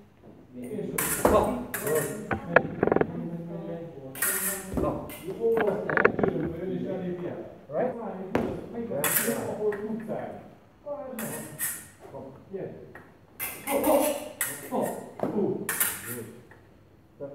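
Fencing sabre blades clicking and ringing against each other in a few sharp metallic strikes, over people talking in a large hall.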